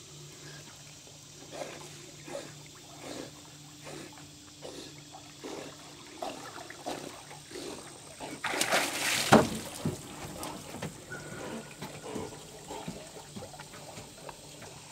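A dog swimming, with small sloshes and laps of water, then a loud splash and spray of water about eight and a half seconds in as it reaches the ramp with the retrieved bird.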